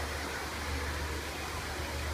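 Steady rushing noise with a deep rumble under it and no distinct events.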